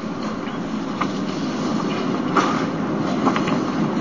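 Steady background noise of an old room recording, a fairly loud even hiss and rumble, with a few faint clicks about a second in, near the middle and about three seconds in.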